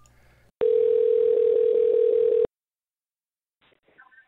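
Telephone ringback tone heard over the phone line: a single steady ring lasting about two seconds, starting about half a second in, as an outgoing call rings the other end.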